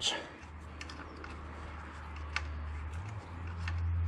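Faint scattered metallic ticks as a small steel bolt is turned out by hand from the gear-lever linkage clamp on a motorcycle's gear selector shaft, over a steady low hum that grows louder about three seconds in.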